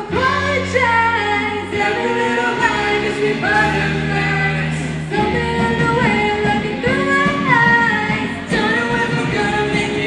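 A live pop-rock band playing, with sung vocals over sustained low notes, guitar, drums and keyboard, through the hall's PA speakers.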